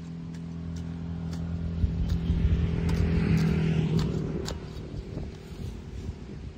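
Engine of a passing motor vehicle, growing louder to a peak about three seconds in and then fading away, with scattered sharp clicks of a hand tool working soil.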